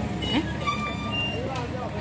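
Steady low rumble of traffic and vehicle engines, with voices in the background and a few short high tones about a second in.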